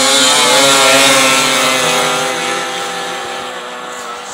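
Two 600 cc two-stroke snowmobiles, a ported Yamaha SX 600 triple with triple pipes and a Ski-Doo MXZ 600 HO SDI twin with a tuned pipe, running at full throttle in a drag race. Their high engine note holds steady and fades from about a second in as they pull away.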